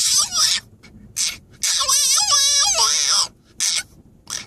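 French bulldog crying from inside a soft pet carrier: a few short high-pitched cries and one long, wavering cry in the middle. It is protesting being shut in the carrier for the car ride.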